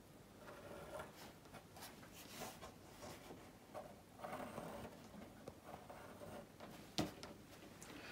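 Faint scratching of a pencil drawing on rough watercolour paper, in several short strokes, with one sharp click near the end.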